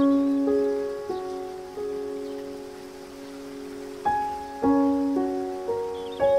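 Slow, gentle solo piano: a chord struck at the start and a few single notes that ring and fade, then a new run of chords from about four seconds in. Underneath is a steady hiss of rushing water.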